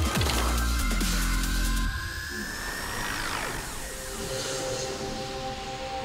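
Electronic background music. A heavy bass line cuts out about two seconds in, leaving a rising synth sweep that peaks and slides down around three seconds, followed by thinner sustained tones.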